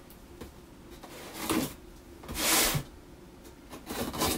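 Cardboard box being turned and slid across a wooden tabletop: two short scrapes, the second about halfway through being the louder, and a few light clicks near the end as a utility knife is brought to the taped seam.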